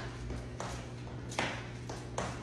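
Sneakers landing on a tile floor during a jumping exercise: two soft footfalls under a second apart, over a steady low hum.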